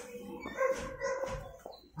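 A dog barking faintly in the background, two short barks.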